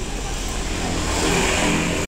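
A motor vehicle passing close by, its noise growing steadily louder over the two seconds.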